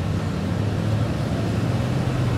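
Steady engine and road noise of a moving car heard from inside its cabin: a constant low hum over a hiss of tyres and air.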